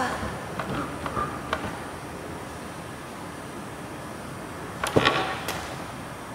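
A sharp thud from a gymnastics springboard take-off, then a second, lighter knock about half a second later as the gymnast lands in a split on the balance beam. Both come near the end of an otherwise quiet stretch.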